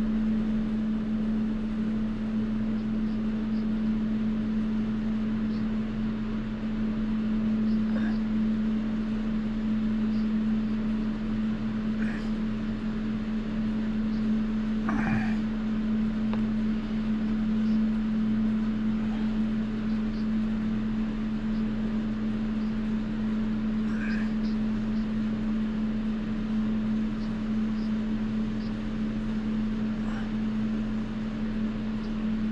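Steady low mechanical hum at an even level, with a few faint short sounds scattered over it.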